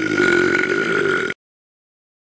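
A creature roar sound effect for a giant CGI lizard monster: one loud, steady-pitched roar that cuts off suddenly about a second and a half in.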